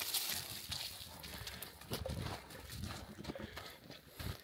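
A dog running back through long grass and brush: its footfalls rustle the vegetation close by, with its breathing and snuffling near the microphone.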